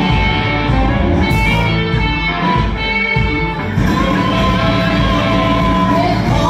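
Live country-rock band playing, with electric guitar to the fore over bass, drums and keyboard.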